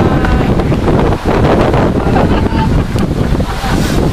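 Wind buffeting the camera's microphone: a loud, steady rumble, with a brief lull about a second in.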